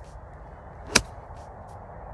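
A golf iron striking the ball off the grass about a second in: one sharp, short crack.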